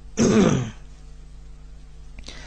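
A man clears his throat once, harshly, about a quarter second in, lasting about half a second.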